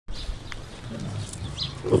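Impala grunting, with one short loud grunt near the end, among brief high bird chirps and a single light click about half a second in.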